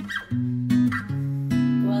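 Band playing between sung lines: several strummed acoustic guitar chords ring over a sustained bass guitar line.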